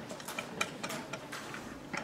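Classroom room sound: scattered light clicks and taps at an irregular pace, like pens and pencils on desks, with faint murmur in the background.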